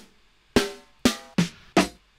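Snare drum samples auditioned one after another from a sample browser: four short snare hits at uneven intervals, each a different sound, some with a ringing pitched tone.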